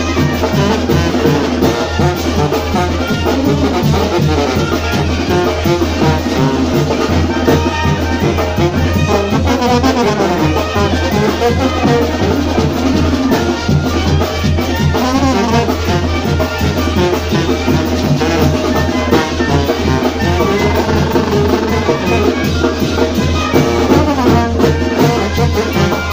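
Oaxacan brass band playing live: trumpets, trombones and sousaphone over a steady drumbeat, loud and continuous.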